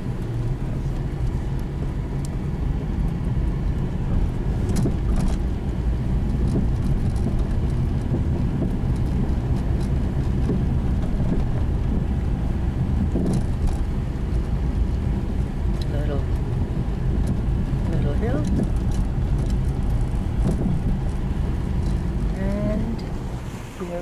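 A car driving slowly on a gravel road, heard from inside the cabin: a steady low rumble of engine and tyres, with a few sharp clicks about five seconds in.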